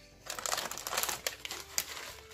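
Plastic crisp bag crinkling as it is pulled out of a snack box and handled, a dense run of crackles with sharp snaps.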